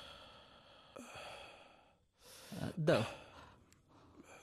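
A man sighing heavily: breathy exhalations over the first two seconds, then a louder, voiced sigh about two and a half to three seconds in.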